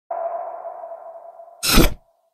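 Opening sound logo: a single steady tone that starts just after the beginning and fades over about a second and a half, then a short loud whoosh near the end that cuts off abruptly.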